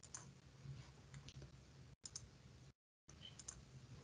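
Near silence: faint room tone on an online-meeting audio line, with a few soft clicks. The sound cuts out completely for a moment near the end.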